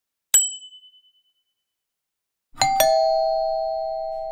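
Notification-bell sound effects. A short, high ping comes about a third of a second in and dies away within a second. Then, after about two and a half seconds, a two-note bell chime is struck twice in quick succession and rings on, slowly fading.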